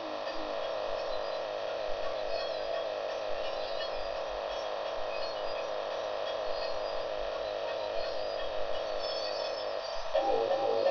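A held, droning synth tone with no beat, a beatless breakdown in a gabber hardcore track.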